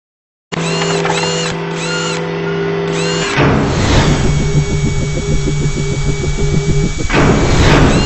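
Sound-designed logo intro made of mechanical effects. A steady machine whir with a few short chirps over it comes first. A whoosh about three and a half seconds in leads into a fast, even mechanical pulsing, and a second whoosh comes near the end.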